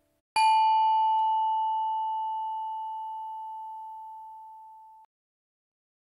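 A single bell-like ding struck about a third of a second in, ringing at one steady pitch and fading over nearly five seconds before it cuts off abruptly.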